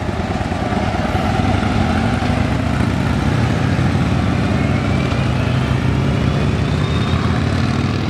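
Road traffic passing close by: a car and then a motorcycle, the motorcycle's engine rumble steady and loudest around the middle.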